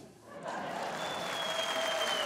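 Studio audience applauding, starting about half a second in and settling into steady clapping.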